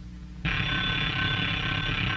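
An alarm clock bell ringing continuously. It starts suddenly about half a second in and stops near the end.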